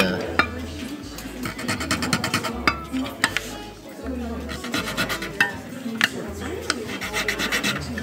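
Short rasping strokes of a small file cutting the first shallow string notches into a guitar bridge. The guitar strings are pushed aside and give a few brief pings.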